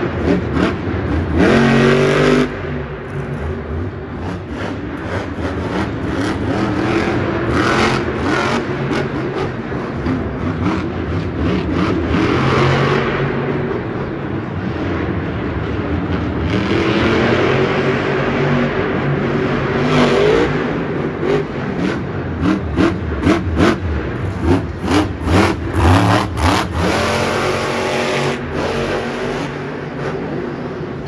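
Monster truck's supercharged V8 revving hard, its pitch sweeping up and down as it drives the course. In the last several seconds it breaks into a run of quick, repeated throttle blips before the jump.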